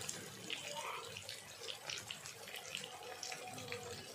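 Chicken tomato masala frying in oil in a wok: a steady sizzle with frequent small pops and crackles.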